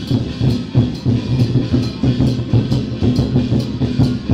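Loud percussion-driven procession music with a quick, steady drum beat: low drum thumps and sharp, regular clicks that accompany the dancing deity-general figure.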